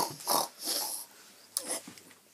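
A person making short, breathy pig-like snorts, an impression of a pig, three times.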